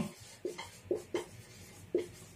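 Felt-tip marker squeaking on a whiteboard in several short strokes as a word is written out.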